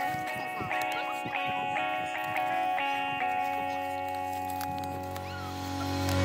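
Background music: a sustained chord held steady, with a few short gliding sounds over it in the first couple of seconds.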